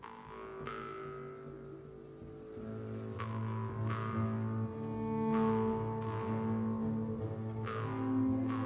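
Live orchestral music: low bowed strings (cellos and double basses) hold sustained notes that swell about two and a half seconds in, with a few sharp plucked attacks that fall away in pitch.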